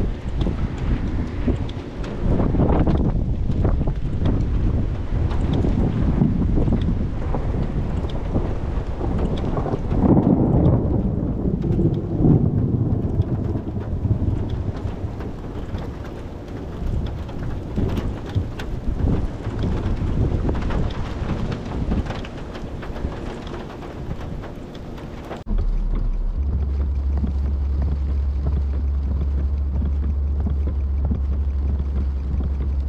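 Gusty thunderstorm wind buffeting the microphone in uneven surges. About 25 seconds in, the sound cuts off abruptly and gives way to a steady low hum.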